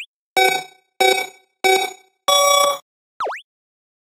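Countdown-style sound effect: three short bell-like dings about two-thirds of a second apart, then a longer fourth ding. Near the end comes a quick swoop that dips in pitch and then rises.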